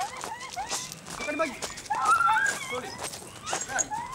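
A series of short, high-pitched cries that rise and fall in pitch, one after another, with a few sharp clicks among them.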